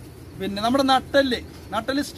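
A man's voice speaking in short phrases, after a brief pause at the start.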